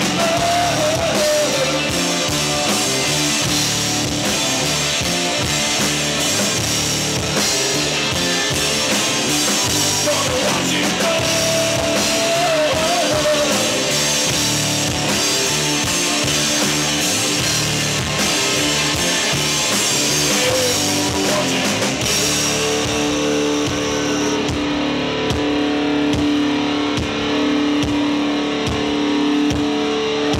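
Live rock band playing an instrumental section: electric guitar over drum kit and bass, with the lead notes bending in pitch. About 22 seconds in, the drums and cymbals drop out, leaving held guitar chords ringing.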